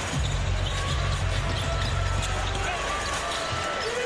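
A basketball being dribbled on a hardwood court, over the steady rumble and chatter of an arena crowd.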